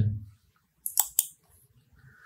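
Three quick computer mouse clicks about a second in, all within half a second.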